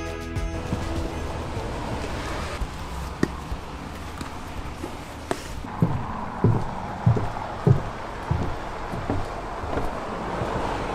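Footsteps on the wooden plank walkway of a roofed medieval town wall: slow, even, hollow thuds about every two-thirds of a second, starting a little past halfway through.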